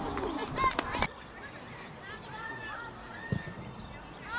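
Footballers shouting and calling to each other across an outdoor pitch, louder in the first second and then more distant, with a single short dull thump a little after three seconds in.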